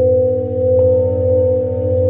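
Tibetan singing bowls ringing in long overlapping tones, the deepest one wavering with a quick beat. Bell crickets (suzumushi) trill steadily at a high pitch over them. A light tap a little under a second in adds a new, higher bowl tone.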